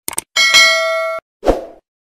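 Click and bell sound effects of a subscribe-button animation: two quick clicks, then a bright bell-like chime that rings for most of a second and cuts off sharply. A short low thump follows.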